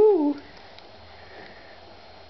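Baby cooing: one wavering, sing-song vocal sound that ends about a third of a second in, followed by quiet.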